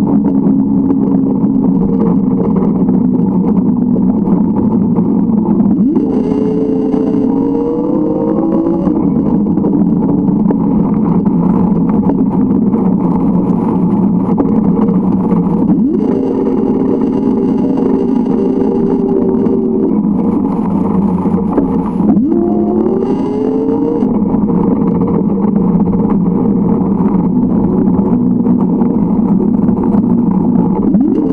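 A vehicle's motor running continuously, its pitch climbing as it gathers speed about six seconds in and again about twenty-two seconds in, with a higher whine joining while it pulls, over a steady rushing noise.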